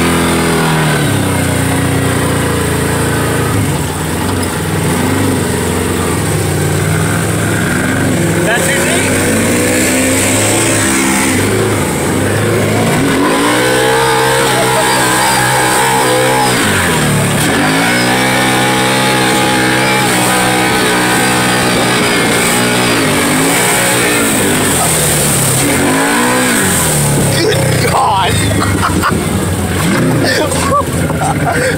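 Side-by-side UTV engine revving up and dropping back again and again as it drives through muddy puddles.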